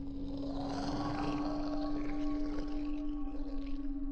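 Dark ambient music holding one low sustained drone note, with a swell of hissing noise rising about half a second in and fading near the end.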